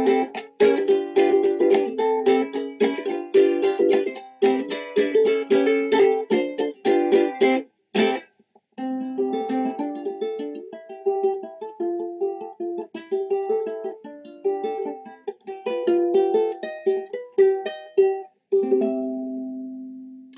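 Clifford Essex 'Gambler' mahogany-bodied tenor ukulele strummed in a steady rhythm for about eight seconds. After a brief break it is fingerpicked as single notes and chords, ending on a held chord that rings out and fades.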